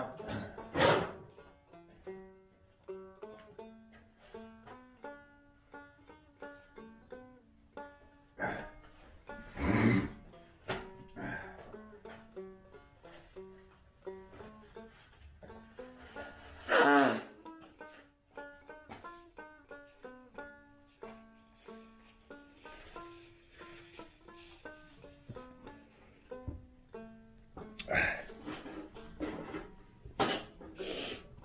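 Banjo music playing: a steady run of quick plucked notes in a bluegrass style. It is broken by a few short, louder noises about a second in, around ten and seventeen seconds in, and near the end.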